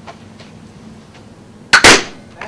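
A toy pistol fired at a balloon: two loud, sharp bangs in quick succession near the end, the shot and the balloon bursting.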